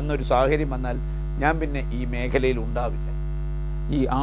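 A man talking over a steady low electrical mains hum in the recording. The hum is heard alone in a short pause near the end.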